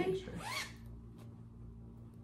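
A zipper on a fabric project bag being pulled open, followed by a few faint rustles and taps as the bag is handled.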